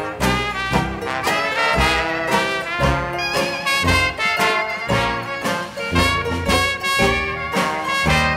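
Traditional Dixieland jazz band playing an instrumental passage: trumpet, trombone and clarinet over tuba, banjo, piano and drums, with a steady beat.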